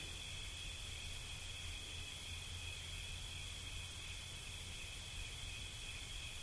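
Crickets chirping faintly in a steady, unbroken chorus, a constant high-pitched drone, with a low hum underneath.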